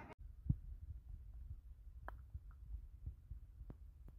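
Faint low rumble of wind and handling on a phone microphone, with a few soft, scattered knocks, a dull one about half a second in and a sharper click about two seconds in.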